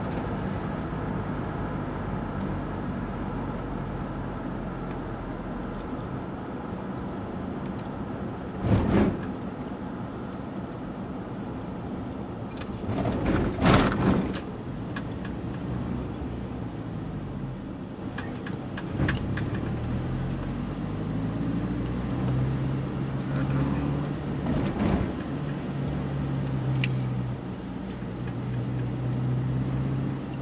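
Car engine and tyre noise heard from inside the cabin while driving, the engine note falling and rising as the car slows and speeds up. A few brief knocks cut through, the loudest about thirteen to fourteen seconds in.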